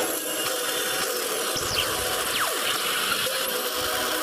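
Lightning-storm intro sound effect: a steady electric crackle, with a couple of quick falling whooshes about halfway through.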